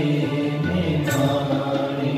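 Devotional chanting, mantra-like, over a steady sustained drone.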